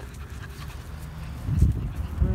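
A puppy breathing and sniffing right at the microphone, with one louder low puff about one and a half seconds in.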